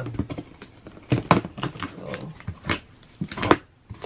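A knife slicing through plastic packing tape on a cardboard shipping box: several short, sharp cuts in quick strokes.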